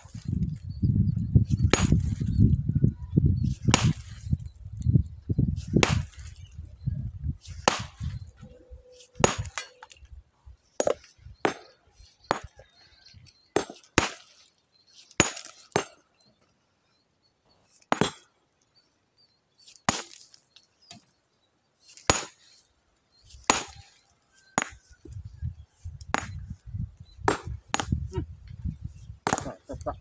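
Small sledgehammer striking a stone boulder: about two dozen sharp, ringing clinks of steel on rock at irregular intervals of one to two seconds, the blows splitting the boulder. A low rumble runs under the first several blows and comes back near the end.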